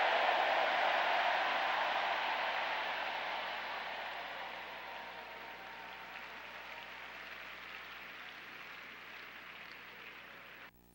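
A congregation clapping, loud at first and dying away slowly over the next several seconds.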